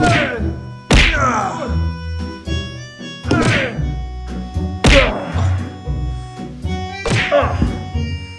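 Four loud whacks about two seconds apart, each trailing off in a falling pitch, over background music with a steady bass line.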